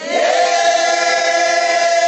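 A group of voices singing a worship song together, holding one long note.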